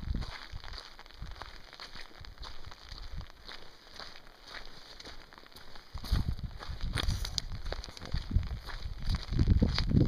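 Scattered ticks of light rain falling on an umbrella. About six seconds in, a low, rough rumble of wind on the microphone joins them and grows louder.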